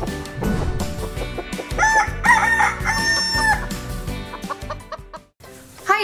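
Music with cartoon chicken sound effects over it: a run of short clucks about two seconds in and a longer held crow-like call about three seconds in. The music stops a little after five seconds.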